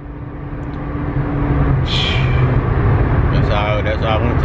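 Steady low rumble of a car driving, engine and road noise heard from inside the cabin, with a short hiss about two seconds in.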